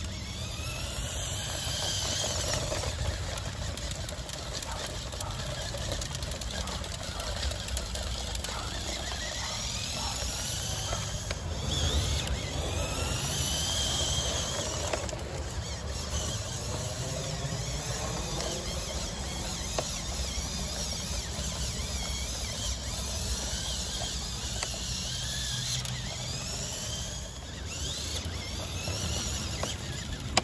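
LEGO Technic RC car's electric motors and CVT gear train whining as it drives at full power, the pitch rising and falling again and again as the transmission shifts ratio.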